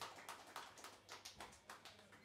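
Faint scattered hand clapping from a small audience, thinning out and dying away near the end.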